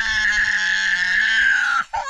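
A young child wailing: one long, loud, held cry that breaks off just before the end.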